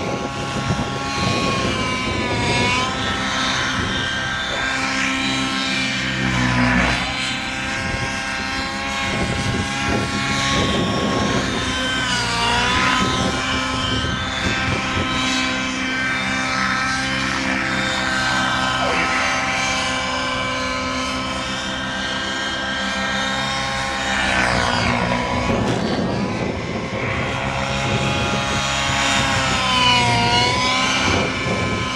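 Engine of a radio-controlled model aircraft running steadily as the model makes repeated low passes, its pitch dropping each time it goes by.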